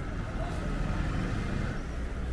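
A vehicle engine running with a steady low rumble, a little louder in the middle, with faint voices behind it.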